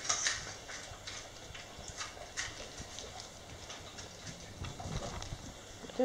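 Dog's claws clicking on a tiled floor: a few scattered light taps.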